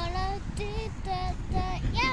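A young girl singing, a string of short held notes that step up and down in pitch, the last one rising near the end.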